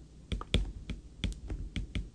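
A run of light, sharp clicks at an irregular pace of about four to five a second.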